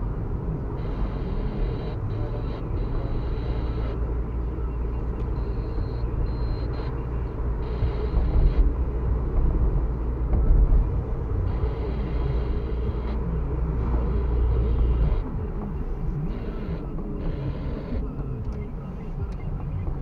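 Car cabin noise while driving: a steady low engine and tyre rumble, heard from inside the car. The deepest part of the rumble falls away about three quarters of the way through.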